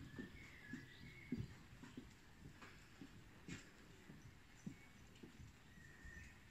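Faint, muffled thuds of a trotting horse's hooves on a soft arena surface, with a few faint chirps early on and again near the end.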